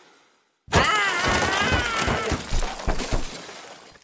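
A cartoon character's high, wavering scream over a dense clatter of crashing and breaking sound effects, starting suddenly after a short silence and fading away toward the end.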